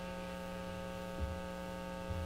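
Steady electrical mains hum: a low buzz with a stack of higher overtones, with a faint low bump a little after a second in.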